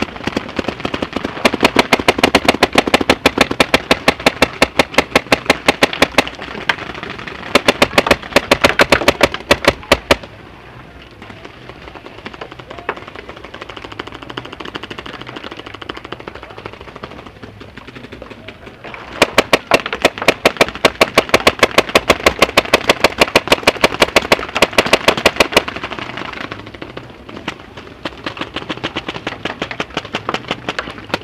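Paintball markers firing rapid strings of shots close by, in two long runs with a stretch of quieter, more distant popping in the middle.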